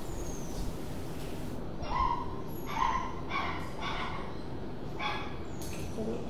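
A dog barking about five times in short, high yips, starting about two seconds in, over steady low background noise.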